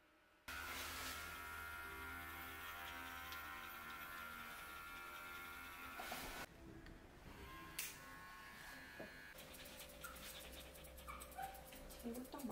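Electric pet clipper running steadily as it trims the fur around a bichon's paw. It starts suddenly half a second in and stops about six seconds in. After that it is fainter, with a few light snips of grooming scissors near the end.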